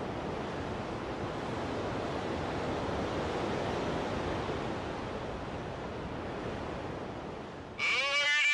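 A steady rushing noise like surf, easing slightly toward the end. Just before the end a pitched, wavering tone with many overtones starts suddenly.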